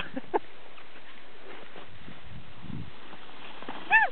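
A steady rustling hiss, with a faint tick just after the start. Near the end a woman lets out one short, loud, high-pitched yelp that falls in pitch.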